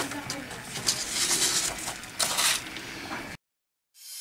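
Paper rustling and crinkling as a sheet of paper with glitter on it is handled, in two stronger bursts about a second and two seconds in; the sound cuts off abruptly near the end.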